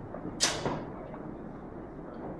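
A single sharp clack of training weapons striking in a sparring exchange, about half a second in, followed at once by a smaller knock.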